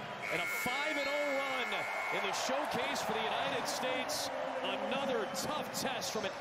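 Audio from a televised basketball game as it ends. The arena crowd and commentary run throughout, and a steady horn-like tone sounds for about two seconds just after the start: the end-of-game buzzer.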